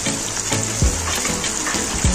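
Chicken, onions and freshly added tomatoes sizzling in hot oil in a wok, a steady crackling hiss, over background music with a slow low beat.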